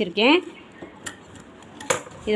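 Metal tailor's scissors clicking at a sewing machine: a light click about a second in and a sharp metallic snip near the end.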